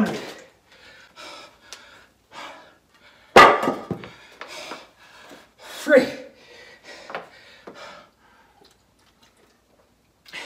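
Heavy, rapid panting of a man winded from several hundred burpees, short breaths about twice a second. The loudest breath comes about three and a half seconds in, and a voiced exhale follows near six seconds.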